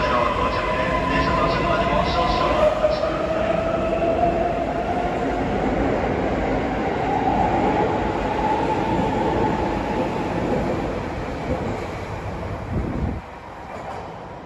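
Keisei Skyliner electric train pulling out and accelerating along the platform: its traction-motor whine rises steadily in pitch over about nine seconds above the rumble of the wheels. The sound then fades as the last car draws away and drops off sharply near the end.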